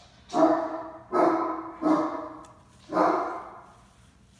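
A dog barking four times, each bark sharp at the start and fading, with uneven gaps between them.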